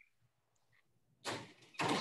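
Near silence for about the first second, then a short noisy sound, and a woman's voice starts speaking near the end.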